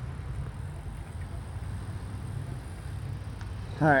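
Steady low rumble of wind on a phone microphone and tyre noise while riding a BMX bike across asphalt.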